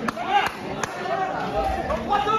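Background chatter of several voices echoing in a large hall, with three sharp clicks in the first second.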